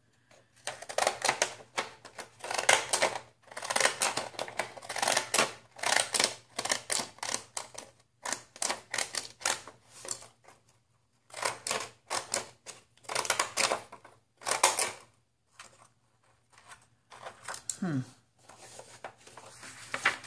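Decorative-edge craft scissors cutting paper: runs of quick, crisp snips with short pauses between runs as the blades work along the patterned edge.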